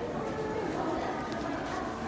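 Indistinct voices in a large public room, a low babble with no clear words, over a steady hum, with a few faint ticks.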